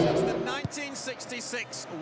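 Crowd hubbub fades out in the first half second, giving way to a man's voice: TV football commentary over the match broadcast.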